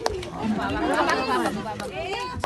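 Several people talking at once: overlapping, indistinct party chatter with no single clear voice.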